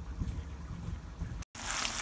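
A faint low rumble with a few soft knocks, then, after an abrupt cut about one and a half seconds in, chorizo sizzling in a frying pan.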